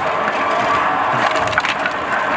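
Wooden pallets being hauled and pulled apart, boards clattering and knocking together, with a quick run of sharp knocks and cracks a little past the middle.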